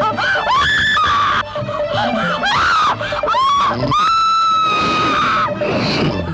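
A woman screaming: several short high cries, then one long held scream about four seconds in, over dramatic film background music.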